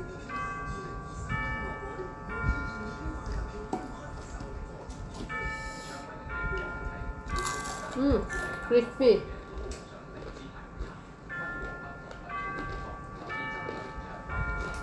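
Background music of slow chiming bell-like notes, each ringing on and overlapping the next, over soft chewing sounds. A short hummed voice sound comes twice about eight to nine seconds in.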